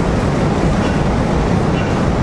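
A loud, steady rumbling noise, heaviest in the low end, with no speech.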